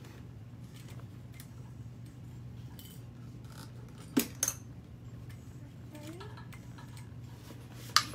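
Steady low hum of an industrial sewing machine's motor, with no stitching rhythm. Two sharp metallic clicks come close together about four seconds in, and another comes near the end.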